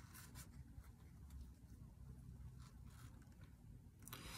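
Near silence, with faint scattered light clicks and rustles of a tarot card deck being handled in the hands.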